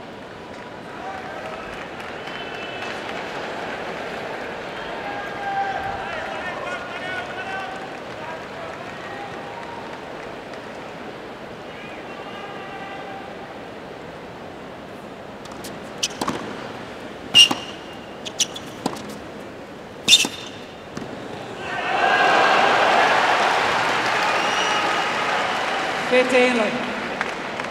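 Stadium crowd chatter, then a short tennis point: a handful of sharp ball bounces and racket hits a little past the middle, the loudest two about three seconds apart. The crowd then breaks into applause near the end.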